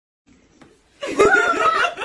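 A high-pitched, excited laugh or cry of joy begins about a second in.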